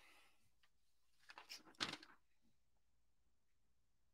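A short rustle of paper being handled, a few quick crackles about a second and a half in, as a sheet of notes is picked up; otherwise near silence.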